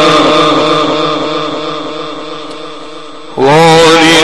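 A man's voice chanting Arabic religious recitation in the melodic tajweed style through a microphone. A long held note trails off over about three seconds, then the next phrase comes in loud with a rising swoop near the end.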